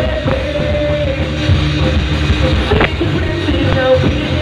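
A rock band playing live: electric guitars, bass guitar and drums at full volume, with a long held note over the dense low end.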